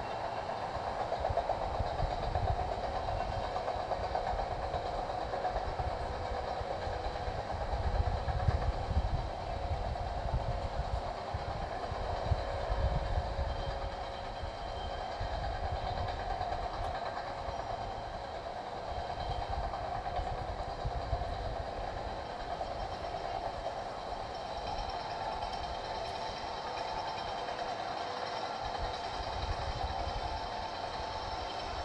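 Steady outdoor city background: a constant mechanical hum, with wind gusting on the microphone in uneven low rumbles. The gusts are strongest about a third of the way in.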